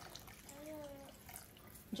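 Red wine poured from a glass bottle into broth in an enamelled cast-iron Dutch oven, a faint trickle and splash of liquid.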